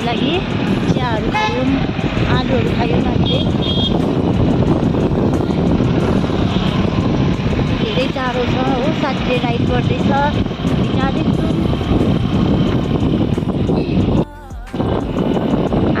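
Riding noise of a moving scooter: a loud, steady rush of wind and engine, with voices talking over it. The sound briefly drops away about fourteen seconds in.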